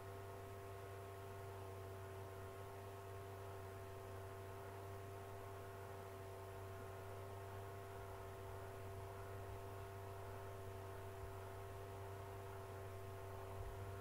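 Faint, steady electrical hum with a few fixed tones, unchanging throughout: background recording hum with no other sound events.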